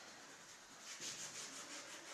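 Faint rubbing and scraping, a run of quick scratchy strokes starting about a second in, over a low room hiss.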